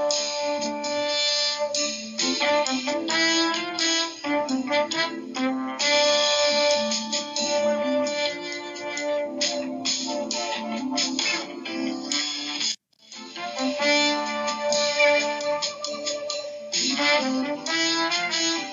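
Instrumental background music with a steady run of notes, cutting out for a split second about thirteen seconds in before starting again.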